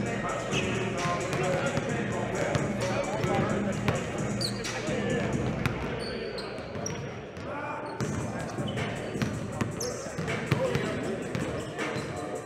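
Basketballs bouncing on a gym floor during practice, many scattered knocks, over indistinct voices in a large hall.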